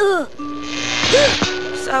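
Short cartoon music cue: held notes under a rushing swell that peaks just past a second in, with a quick slide up and back down in pitch.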